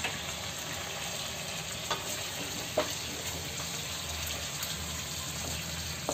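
Chicken pieces and sliced tomatoes sizzling steadily in a metal kadai, with two brief light taps about two and three seconds in.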